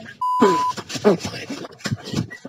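A censor bleep: one steady high beep of about half a second, just after the start, masking a swear word, followed by a voice speaking.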